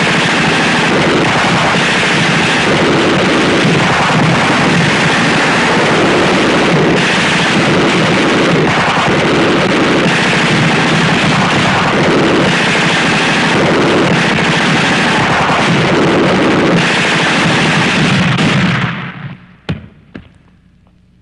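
Sustained automatic gunfire, as in a film shootout: a dense, unbroken barrage that stops abruptly about nineteen seconds in.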